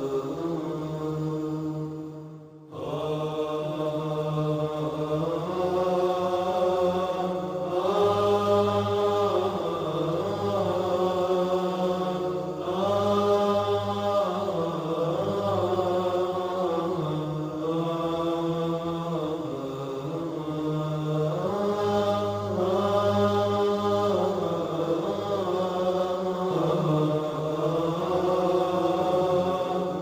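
Vocal-only Islamic background nasheed: voices chanting long held notes over a low drone, the melody stepping from note to note every second or two. The sound dips briefly about two and a half seconds in, then resumes.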